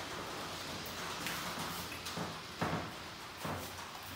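Honey frame being uncapped with a capping scratcher: a faint scratching of wax cappings, with a few light knocks as the wooden frame is handled against the tub.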